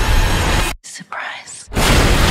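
Horror-trailer soundtrack: a dense wall of music and sound effects cuts out abruptly a little under a second in. It leaves a short quiet gap with a faint breathy whisper, and a loud hit brings the music back near the end.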